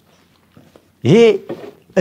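A man's voice: a short exclamation, like "hey", with its pitch rising then falling, about a second in, after a pause of faint small clicks.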